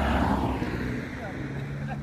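A car passing by on the road, its engine and tyre noise loudest at the start and then fading away.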